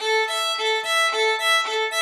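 Violin bowed in an even string-crossing pattern, the bow rocking between two neighbouring strings so that two notes a fifth apart alternate smoothly, about five notes a second, without stops between bow strokes.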